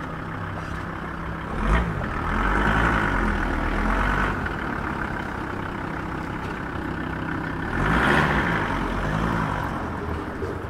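A van's engine idling close by, its pitch rising and falling twice as the engine speed changes, once from about two seconds in and again near the end. There is a short sharp knock just before the first rise.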